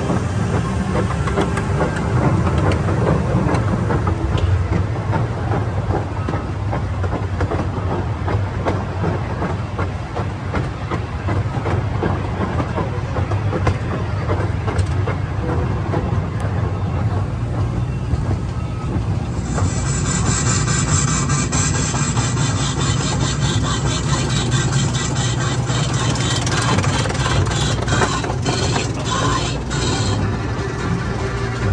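Small ride train's cars running along narrow-gauge rails, a steady rumble with rattling clicks from wheels and couplings. About twenty seconds in, a louder hissing rattle joins.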